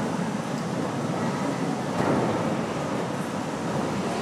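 Steady rushing sea-waves sound effect played over the hall's speakers, a continuous surf-like noise with no clear rhythm.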